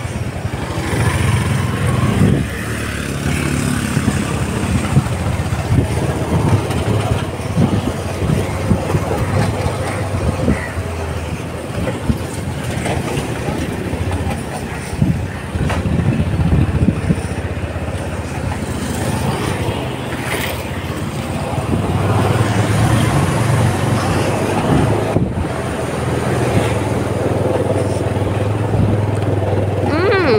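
A motor vehicle's engine running steadily while driving along a road, heard as a continuous low hum with road and wind noise from riding on the moving vehicle.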